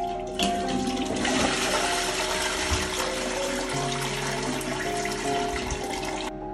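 A toilet flushing: water rushing into the bowl, starting about a second in and running on steadily, over background music.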